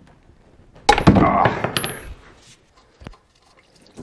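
A sharp metallic clank with a short ringing rattle about a second in: a steel tool striking the Caterpillar D315 diesel engine's housing as the fuel filter housing drain is worked loose. A single faint click follows near the end.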